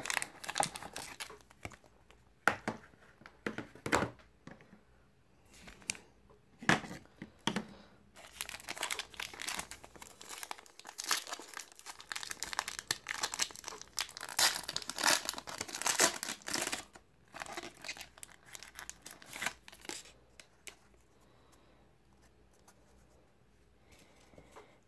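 Foil wrapper of a trading-card pack crinkling and tearing as it is handled and ripped open, with a few sharp clicks and rustles from the cardboard box at first. The crinkling is densest in the middle and dies away near the end.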